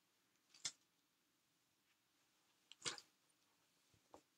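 Two brief rustles of yarn skeins being handled, one shortly after the start and a longer one about three seconds in, against near silence.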